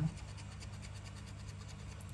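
Scratch-off coating being scraped from a paper Lotto scratch card with a hand-held scratcher: a steady, fine rasping made of many small rapid strokes.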